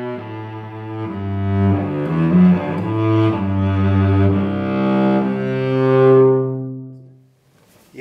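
Cello bowed in its low register, strung with Thomastik-Infeld Versum Solo strings, playing a slow phrase of several notes. It ends on a held note that swells and then fades away about seven seconds in.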